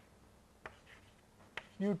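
Chalk writing on a blackboard: a few sharp taps with faint scraping in between as a formula is written.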